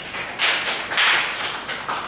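A small audience applauding, the separate hand claps quick, uneven and overlapping.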